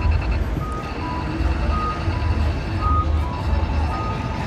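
Electronic beeping: a rapid high beep pattern gives way to a steady high tone about a second in, then pulses again near the end, while a lower two-note beep alternates high-low roughly once a second. Under it runs the low rumble of traffic engines.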